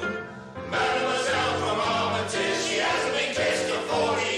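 Intro music with a choir singing long held chords, which drop away briefly about half a second in and then swell back.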